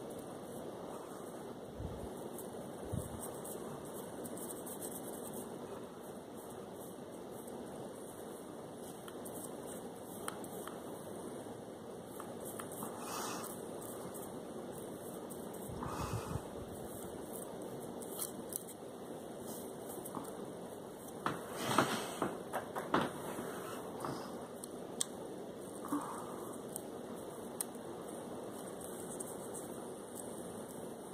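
Steady faint hiss of a quiet room, broken by a few soft handling rustles and light knocks, with a short cluster of louder clicks and rustles about two-thirds of the way through.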